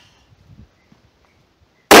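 A single rifle shot near the end: a sudden, very loud crack with a short echoing tail.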